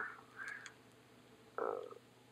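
A pause in a man's speech with only a few faint small sounds, then a drawn-out, hesitant "uh" near the end.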